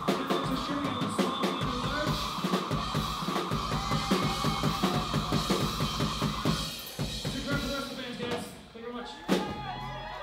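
Live rock band playing the end of a song: a drum kit plays a busy pattern with cymbals under a held high guitar tone that stops about seven seconds in. The playing then thins out, with one loud final hit near the end.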